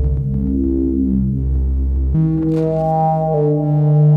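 Eurorack modular synthesizer playing slow ambient music: sustained chord tones over a deep bass. About halfway through the notes change, with the bass moving and a new chord coming in, and the upper notes shift again shortly after.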